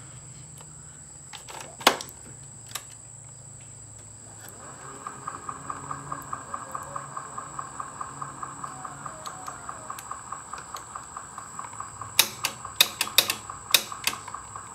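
An 8-track cartridge is pushed into an Akai CR-80T deck with a sharp clunk about two seconds in. From about four seconds the playing deck gives a faint, even pulsing, about three or four pulses a second. Near the end come several sharp clicks as the track selector button is pressed.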